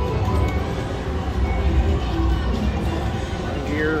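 Ultimate Screaming Links slot machine free-spin bonus sounds: the game's music and spinning-reel effects over the steady din of a casino floor, with a quick rising run of tones near the end as the reels stop.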